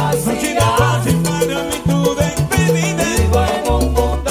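Salsa romántica recording playing: a full band with a bass line stepping between held notes under steady, regular percussion.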